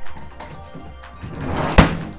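A heavy wooden dresser, dropped by accident, falls over and lands on a concrete floor with one loud crash near the end, after a short rising rush of noise as it goes over.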